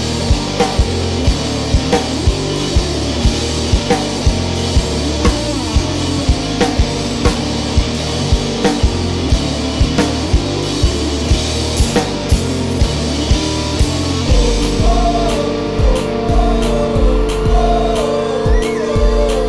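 Rock band playing an instrumental passage: drum kit keeping a steady beat of about three hits a second over a moving bass line and guitars. About fourteen seconds in, the low end grows heavier and a higher melodic line comes in above it.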